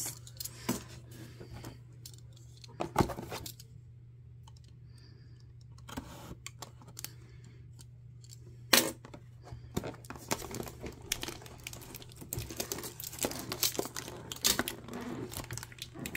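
A cardboard trading-card blaster box being handled and opened by hand: scattered clicks and scrapes, a sharper knock about three seconds in and another near nine seconds, then a busier run of small clicks and crinkles in the last few seconds as the box is worked open. A steady low hum runs underneath.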